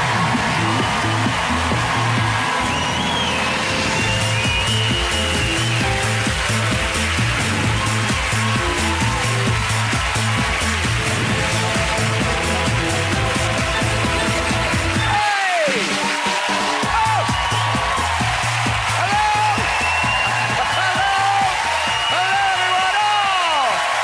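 Upbeat talk-show opening theme music with a pulsing bass line over a studio audience clapping and cheering. The bass drops out briefly about fifteen seconds in, and cheering voices rise over the music in the second half.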